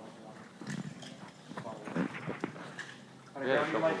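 Footsteps in flip-flops on a hard floor: a handful of light, uneven clacks. A man starts talking near the end.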